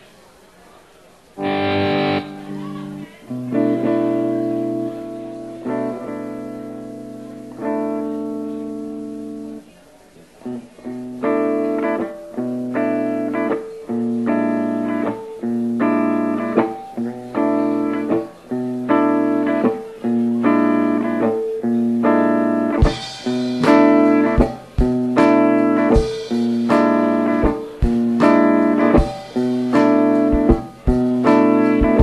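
Live electric guitar instrumental in a rock boogie style: a first chord about a second and a half in and a few held chords, then from about eleven seconds a repeated chord riff at about three chords every two seconds. Drums come in with a cymbal crash about two-thirds of the way through and play along with the riff.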